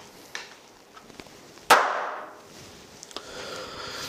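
A single sharp bang or knock about a second and a half in, dying away over about a second, with a few faint clicks before and after it.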